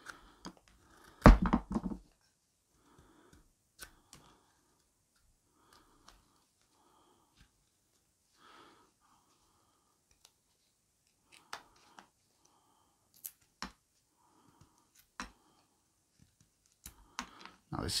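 A carving knife slicing shavings from a fresh green-wood spoon blank, cutting through where a knot runs through the wood: mostly quiet, with soft cuts and a few sharp clicks. A louder knock comes a second or so in.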